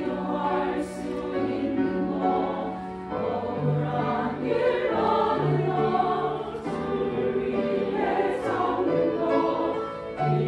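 Church choir of mostly women's voices singing in sustained phrases, with grand piano accompaniment.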